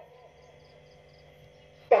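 A lull: a faint steady hum with four or five faint, short high chirps spaced evenly, until a man's voice comes back right at the end.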